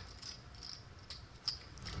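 Clay poker chips clicking faintly against each other as players handle their stacks at the table, a handful of short clicks about half a second apart.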